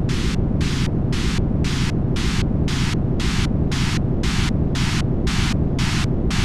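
Electronic noise music from a dark ambient track: a dense, steady wall of low noise with a hiss above it that pulses on and off evenly, about three to four times a second.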